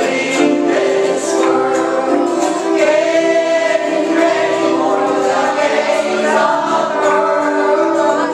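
Church congregation singing a gospel hymn together, a woman's voice on a microphone leading them, with long held notes.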